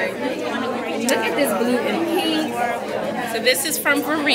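Several people talking over one another: crowd chatter in a busy room.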